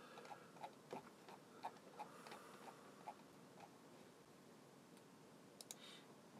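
Faint, light clicks, several a second for the first few seconds and then thinning out, over near-silent room tone.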